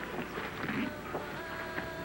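Rustling and scraping of a fabric bag being handled on a bed, irregular and scratchy.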